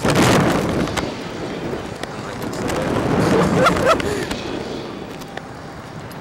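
Wind rushing over the SlingShot ride's onboard camera microphone as the capsule swings. It surges at the start and again about three to four seconds in, with a short voice cry from a rider during the second surge.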